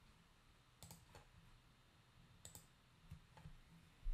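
Near silence with a few faint, short computer mouse clicks spread through, as the app is launched to run in the emulator.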